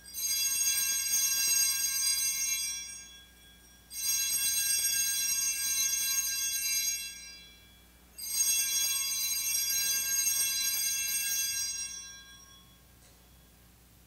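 Altar bells rung three times, three bright jingling rings of about three seconds each, a few seconds apart. They mark the elevation of the host at the consecration.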